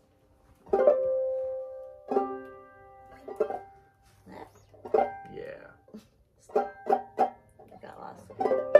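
Two open-back banjos plucked in scattered chords and single notes, with pauses between. A chord rings out about a second in, and a quick run of notes comes near the end.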